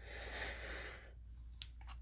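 Faint rustling of a disc case and its cardboard slipcover being handled, with two light clicks near the end.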